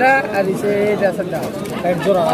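Domestic pigeons cooing continuously, with people's voices talking around them.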